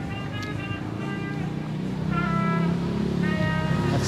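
Background music with short held notes over street traffic, with a motorcycle engine approaching and growing louder in the second half.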